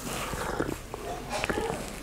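A man sipping a drink from a glass: slurps and swallows, with a brief click about one and a half seconds in.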